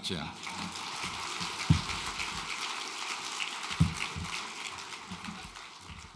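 Audience applauding, dying away toward the end, with two low thumps about two and four seconds in.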